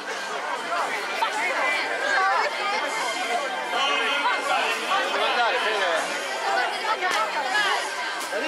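Crowd chatter: many people talking at once in a steady babble of overlapping voices.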